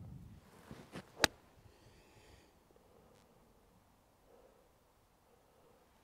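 Eight iron striking a golf ball off turf: one sharp click a little over a second in, with a faint rush of the swing just before it. A released strike, with the clubface squared at impact.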